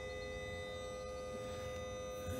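Small 12-volt submersible pump running steadily, pumping automatic transmission fluid up a hose into the gearbox sump: an even hum with a thin, steady whine above it.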